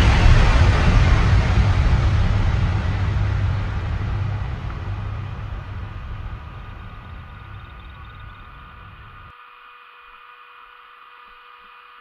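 Steady rushing rumble of wind on a camera's microphone on a snow slope, fading out gradually to a faint hiss over the last few seconds.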